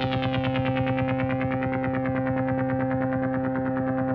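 Synthesized ambient sound-design drone: a sustained chord of steady low tones with a quick, even pulsing running through it and shimmering high overtones above.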